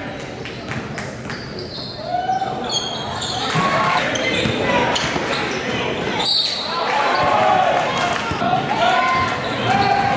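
Basketball bouncing repeatedly on a gym court during play, with players and spectators calling out in a large, echoing hall.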